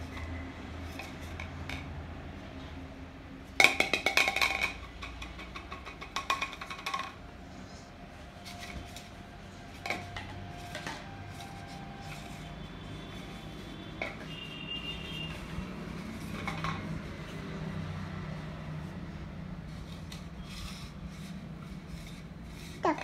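Clattering and rattling of a hard plastic toy: a loud burst about four seconds in and a shorter one around six seconds, then scattered light knocks over a low steady hum.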